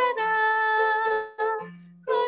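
A girl singing a hymn, holding one long note for about a second, then a short note, then trailing off quietly near the end.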